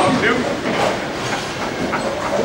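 Steady rumble of bowling balls rolling down the lanes, with voices talking over it.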